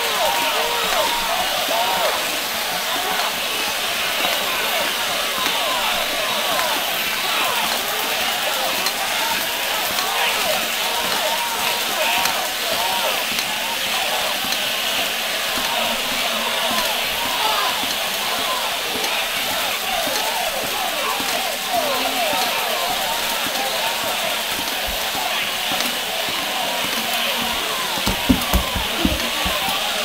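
Several voices chattering at once, with no clear words, and a few thumps near the end.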